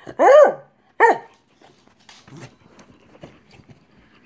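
Beagle giving two high yelping barks, the first rising and falling in pitch, the second shorter about a second in: jealous barking for attention while another dog is being petted.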